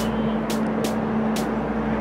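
Steady street background noise with a constant low hum and sharp, hissy ticks about twice a second.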